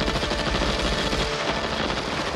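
A long, rapid burst of automatic rifle fire, shot after shot without a break.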